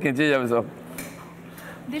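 A man's voice speaking briefly, then a short pause with a single faint click about a second in, over a steady low electrical hum.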